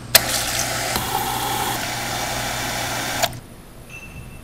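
Soda fountain dispenser pouring carbonated soda into a plastic cup: a click as the valve opens, then a steady rush of fizzing soda for about three seconds that cuts off suddenly.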